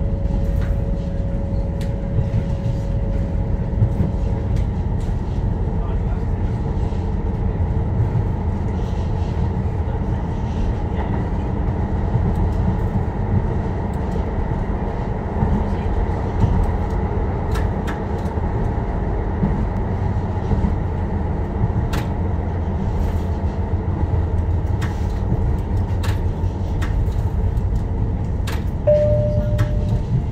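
Tyne and Wear Metro train running on the rails, heard from on board: a steady low rumble with occasional short clicks from the wheels on the track. A steady whine fades out a few seconds in and returns briefly near the end as the train approaches the station.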